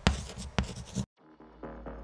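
Pen scribbling in quick scratchy strokes, cut off abruptly about a second in. After a brief silence, a low synth drone and pulsing electronic music start up and build.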